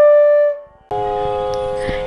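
A single held flute note ends about half a second in. After a short pause, a steady drone of several held tones starts, the background drone for Carnatic singing.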